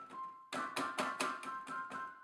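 Piano patch on a Roland JV-1080 sound module, played from a keyboard. A quick run of about eight notes starts about half a second in, all at one fixed loudness, because a MIDI curve filter is sending every key press, hard or soft, at the same velocity.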